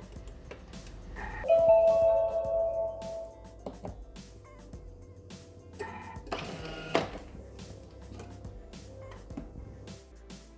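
Background music, with a steady electronic chime from a Thermomix TM6 kitchen robot, lasting about two seconds from about a second and a half in, louder than everything else.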